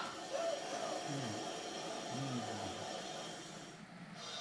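Quiet stretch: a steady faint hiss with two brief low hums of a voice, about a second apart.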